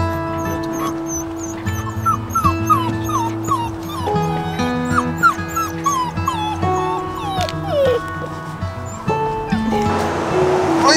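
Background music with held notes, over young goldendoodle puppies whimpering and yipping, with a run of short falling cries in the middle.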